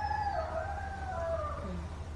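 A rooster crowing: one long call that arches in pitch and falls away near the end, over a low steady background hum.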